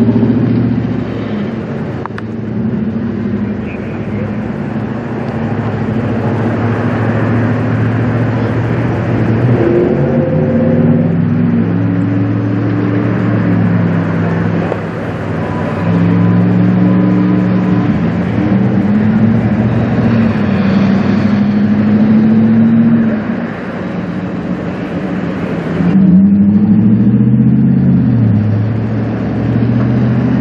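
Fire apparatus diesel engines running hard, their pitch stepping and gliding up and down every few seconds as they drive the pumps feeding the hose lines and the aerial ladder's water stream.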